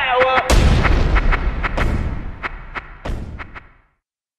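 Closing seconds of a hip-hop track: a held synth note bends downward, then a heavy boom about half a second in. A scatter of sharp, irregular gunshot-like cracks follows over a rumble, dying away to nothing near the end.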